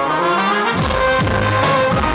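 Live brass band: trumpet and saxophones playing a melody together, with bass drum. The drums and low end drop out for the first moment and come back in under a second in.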